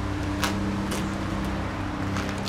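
A steady low hum of even pitch, with a couple of faint clicks.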